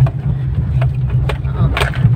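Steady low rumble of a car's engine and tyres heard from inside the cabin while it drives slowly over a rough village road, with a few sharp knocks and rattles from the bumps.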